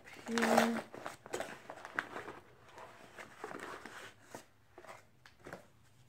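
Packaging being handled and unwrapped: irregular paper or plastic rustling and crinkling with small clicks and taps as a mail-order parcel is unpacked.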